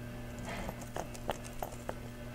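Chrome-plated steel links and prongs of a prong collar clicking and clinking against each other as fingers pinch a prong and push it through a link: a string of light, irregular metal clicks, about six in two seconds, over a steady low hum.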